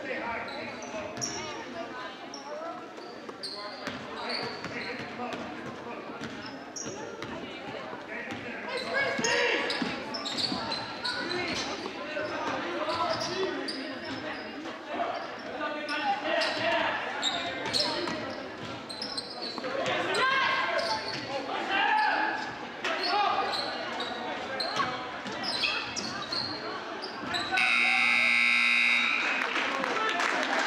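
Basketball game sounds in a gymnasium: a ball bouncing, short high sneaker squeaks on the hardwood floor and crowd voices echoing in the hall. Near the end the scoreboard horn sounds, loud and steady, for about two and a half seconds as the game clock runs out, ending the game.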